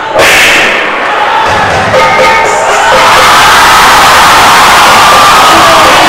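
Loud dance music over a PA system, with an audience cheering and shouting. The sound dips briefly at the start and cuts back in sharply. The cheering swells into a steady loud wash about halfway through.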